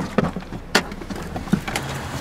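A car door being opened and a person hurrying out of the driver's seat: a few sharp clicks and knocks from the latch and interior. A low steady hum comes in near the end.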